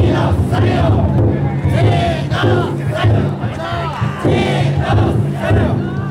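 Bearers of a chousa drum float shouting together in repeated bursts over the steady beat of the float's big taiko drum, with a crowd all around.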